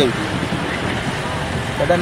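A man's voice cuts off at the start and resumes near the end; between them is only steady, fairly loud outdoor background noise with no distinct event.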